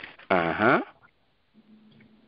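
A person's brief voiced sound, about half a second long and falling in pitch, followed by a faint steady low hum.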